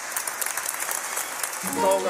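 Studio audience applauding, with held musical notes starting to play near the end.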